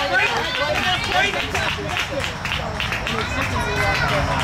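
Spectators along a cross-country course talking and calling out over one another, with the footfalls of runners passing on a dirt trail.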